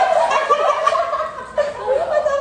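Several people laughing and shrieking together in high, cackling bursts, fading briefly about one and a half seconds in, then picking up again near the end.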